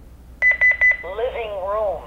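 Honeywell Lynx Touch L5100 alarm panel chiming a quick run of short, high beeps, then its recorded voice starting to announce the zone, "living room window". This is the panel's chime on a zone fault: the 5814 sensor's magnet has been pulled from the contact, so the sensor has been learned in properly.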